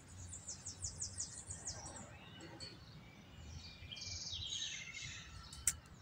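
Small birds singing faintly: a quick run of high, falling notes in the first couple of seconds, then a fast high trill about four seconds in, over a low steady rumble, with one sharp click near the end.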